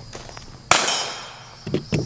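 A single gunshot about two-thirds of a second in, its report dying away over most of a second.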